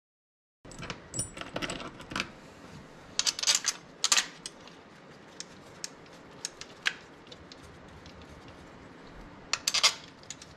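Light metallic clicks and clatter of fuel injectors and the fuel rail being handled and worked into place by hand. The clicks come in short flurries about a second in, around three to four seconds in and again near the end, with single ticks between.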